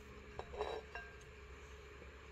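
A few faint, light metallic clinks in the first second: needle-nose pliers touching the metal of a drum-brake assembly.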